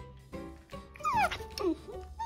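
Boxer puppy whining: two short cries that fall sharply in pitch, about a second in and again shortly after.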